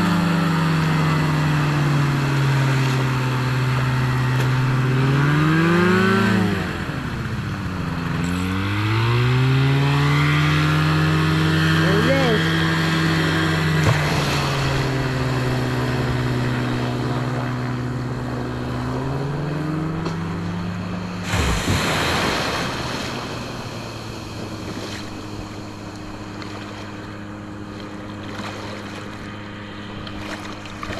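The snowmobile engine and propeller of a homebuilt ultralight seaplane running hard for takeoff, its pitch dipping and climbing twice in the first ten seconds as the throttle changes, then holding steady. About two-thirds of the way in there is a brief rush of noise, and after it the engine sounds quieter and lower as the plane moves away.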